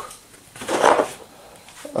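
A cardboard target sheet being handled and moved into place, a brief rustling scrape about a second in.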